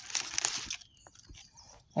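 Rustling and crackling of Indian mustard green leaves being handled and a leaf snapped off, loudest in the first second and then a few faint ticks.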